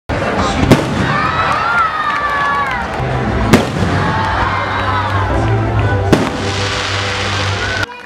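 Aerial fireworks exploding: three sharp, loud bangs, about a second in, at three and a half seconds and at six seconds, over a steady background din. The sound cuts off abruptly just before the end.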